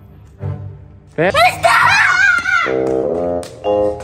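A young woman screams in fright, one loud, wavering scream lasting about a second and a half, over background music.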